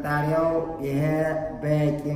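A man's voice speaking in a drawn-out, level, chant-like intonation, its pitch held steady over long syllables.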